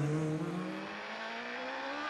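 Superstock racing motorcycle engine pulling away from a pit stop, one steady note climbing slowly in pitch and easing off a little after about a second.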